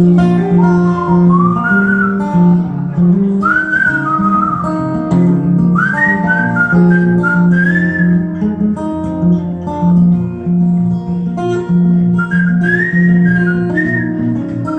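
Acoustic guitar fingerpicked with a steady alternating bass, while a man whistles a blues melody into the microphone, sliding up into its high notes.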